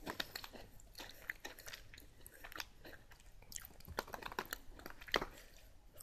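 Soft close-up chewing of a crunchy chocolate-coated cookie snack (Meiji Takenoko no Sato, White & Cocoa), a scatter of small crunches and crackles.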